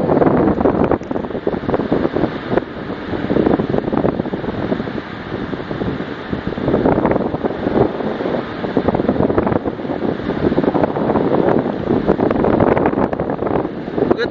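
Wind buffeting the microphone: a loud, steady rushing noise that swells and dips in gusts.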